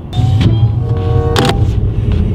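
Car heard from inside the cabin: a loud low rumble with a steady whine over it, and a sharp click about one and a half seconds in.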